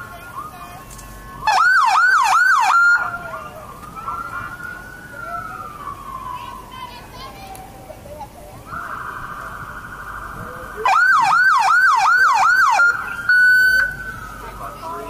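Police car siren chirped in two short bursts of rapid yelp, each under two seconds, about a second and a half in and again near the end. Between them comes a slow falling wail and a steady tone, and a short steady blast follows just before the end.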